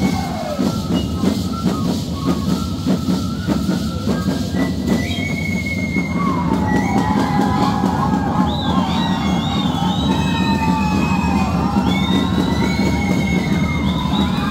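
Dense, continuous rattling of a group of Shacshas dancers' seed-pod leg rattles (shacapas), over live Andean band music. A high, wavering melody line comes in about six seconds in.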